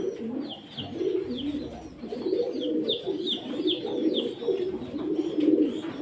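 Domestic pigeons cooing in a continuous low rolling murmur, with short high chirps from a bird repeating two or three times a second above it.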